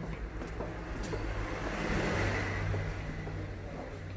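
A vehicle passing by: a rushing sound that swells to its loudest about halfway through, then fades, over a steady low hum.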